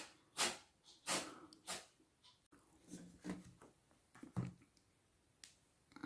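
Faint, scattered soft rustles and taps of a deck of oracle cards being handled: a card is drawn from the deck and the deck is laid down on the spread.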